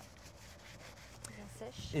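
Dry cloth wiping a rubber hunting boot: a faint, steady rubbing.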